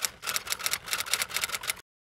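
Typewriter sound effect: a rapid run of key clicks, about seven a second, that stops shortly before the end.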